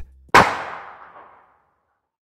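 A single gunshot: one sharp crack about a third of a second in, followed by a long echoing tail that dies away over about a second.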